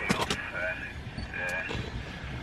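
People talking quietly over the low, steady hum of a vehicle engine running, with a few sharp clicks near the start.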